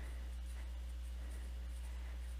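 Pen writing on paper, faint scratching strokes over a steady low electrical hum.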